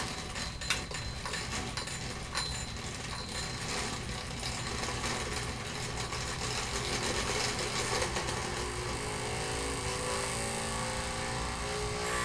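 Small electric motor running steadily with a buzzing whir. A faint pitched hum rises slowly in pitch over the last few seconds as it spins up.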